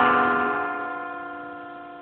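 Solo electric guitar: a chord played fingerstyle just before, left to ring and slowly fade, with no new notes.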